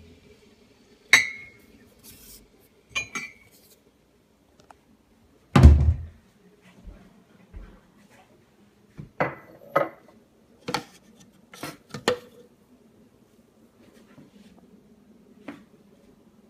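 Kitchenware being handled on a counter: a string of separate knocks and clinks of a plastic juice jug and ceramic mugs, the loudest a heavy thump about six seconds in.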